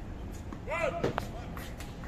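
Tennis ball struck and bouncing on a hard court during a rally: a sharp knock about a second in with a second close behind, and fainter knocks near the end. Just before the loudest knock comes a brief pitched sound that rises and falls.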